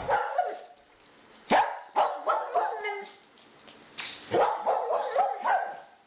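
A dog barking and yipping in short, irregular bursts, with a longer run of barks in the second half.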